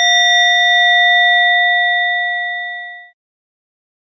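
One struck Buddhist prayer bell ringing out with a clear, several-toned ring that fades slowly and then cuts off abruptly about three seconds in. The bell marks one prostration in the chanted repentance liturgy.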